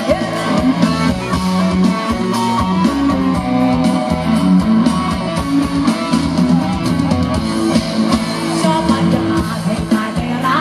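Live band music played loud through a stage PA: drum kit, guitar and held keyboard or bass notes, with a woman singing into a microphone.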